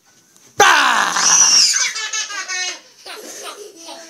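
A sudden loud yell or scream about half a second in, as small children are jumped out at to scare them, followed by a run of laughter.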